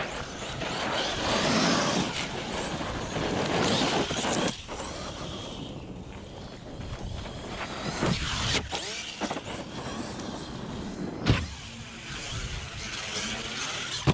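An Arrma Kraton EXB 1/8-scale RC monster truck driving fast over gravel: the electric motor whines up and down with the throttle over the crunch and spray of its tyres on loose stone. A sharp knock comes about eleven seconds in, and another right at the end.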